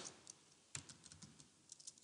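Faint typing on a computer keyboard: a series of separate, irregular key taps.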